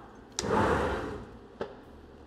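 Sliding enclosure door of a Tormach 770MX CNC mill being pulled open: a click, then a sliding rush that fades over about a second, and a light knock near the end as it comes to a stop.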